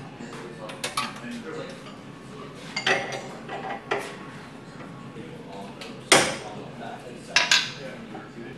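Metal tools clinking and knocking during a tool change on a vertical milling machine, a wrench working on the drawbar at the top of the spindle to free the tool from the collet. There are a handful of separate sharp clinks, the loudest about six seconds in.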